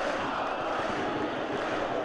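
Steady stadium crowd noise from a football match broadcast, an even wash of sound with no single voice or event standing out.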